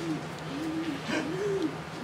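A pigeon-family bird cooing, a steady run of low, soft coos that rise and fall, about three in two seconds.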